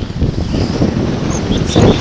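Wind buffeting the camera's microphone as the skier descends at speed: a steady, rumbling rush with a louder gust near the end.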